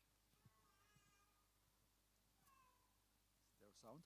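Very faint soundtrack of a film clip being played: three short pitched calls, each falling in pitch, the last one the loudest near the end.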